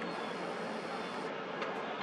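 Steady outdoor background noise with no distinct event: an even hiss-like haze, with a few faint ticks near the end.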